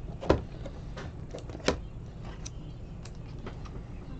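Trading cards handled by hand: a sharp click of card stock just after the start and another about a second and a half later, with a few lighter ticks between and after as the cards are flipped and set down.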